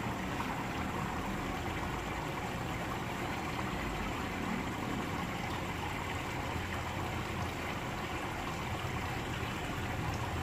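Steady running and trickling water from an aquaponics fish tank's circulating flow, with a low rumble underneath.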